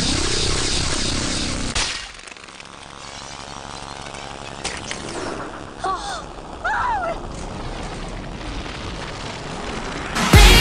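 Cartoon fight sound effects: a loud crashing impact in the first two seconds, then a quieter low rumble with a few sharp hits, and a short yelping cry about six to seven seconds in.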